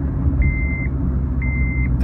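Cabin sound of a turbocharged Honda Jazz (GK) with a manual gearbox, its engine and road noise a steady low hum as the car slows. Over it, a high electronic beep about half a second long repeats once a second.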